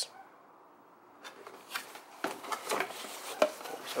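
A cardboard box being opened by hand: irregular scraping, crinkling and small knocks as the flaps are pulled open, starting about a second in.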